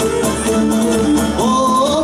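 Live Cretan sousta dance tune played by a string band with laouto. About one and a half seconds in, a singer swoops up into a long held "o" over the playing.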